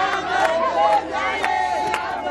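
A celebrating crowd of many voices singing and shouting together, with sharp hand claps about twice a second.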